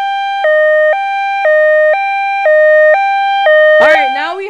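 Two-tone hi-lo siren sound effect, loud and steady, switching between a higher and a lower pitch every half second and cutting off sharply just before the end.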